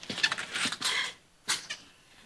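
Soft whimpering cries with breathy catches over about the first second, then one more short breathy burst near the middle.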